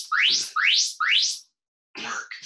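Four quick rising whistle chirps about half a second apart, cueing the start of a work interval.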